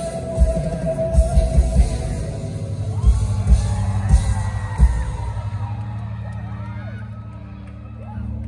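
Live rock band playing the final bars of a song, with drum beats that stop about five seconds in. After that, low guitar and bass notes ring on and fade, while audience voices scream and cheer over them.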